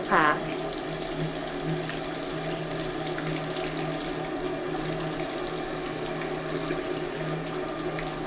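Water from a scrub-sink faucet running steadily into the basin while hands and forearms are rinsed under the stream with plain water.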